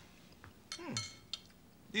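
Quiet eating at a table: a fork or other cutlery clinking on a plate, with a short falling vocal murmur about a second in.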